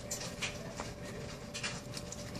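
A pug snuffling and scuffing at the carpet with her nose and paws: a few short, soft sniffs and scrapes.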